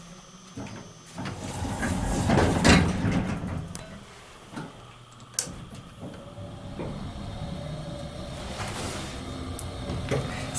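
The doors of a 1979 General Elevator sliding shut, the loudest sound, swelling and dying away between about one and a half and three and a half seconds in. A few sharp clicks follow, then a steady hum from the elevator once the basement button has been pressed.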